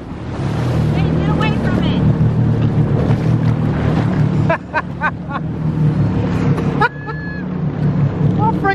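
Jet ski engine running steadily with water rushing and splashing around the hull, and a few short knocks about halfway through.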